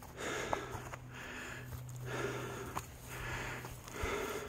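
A person's heavy, rhythmic breathing while climbing a steep slope, about one breath every second, with a few faint ticks between breaths.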